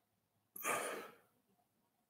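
A man's single audible sigh, a breathy exhale that starts suddenly about half a second in and fades out within under a second.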